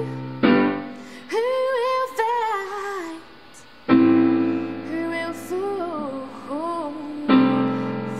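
A woman singing with a piano accompaniment, the piano striking three chords, about half a second in, near four seconds and just after seven seconds, each left to ring under the voice.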